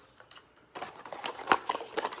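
Small cardboard parts box being handled and opened by hand: light rustling and small clicks of the cardboard, starting under a second in, with one sharper click about halfway through.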